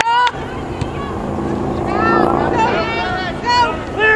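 Spectators and players shouting during a soccer game: a short shout right at the start, then more drawn-out calls from about halfway in, over a steady low hum.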